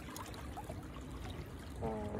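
Water washing and splashing against the hull of a small boat moving over calm sea, with a steady low rumble underneath.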